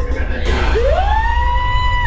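A single siren-like wail that sweeps up in pitch just under a second in, then holds one steady high note, over a constant low hum.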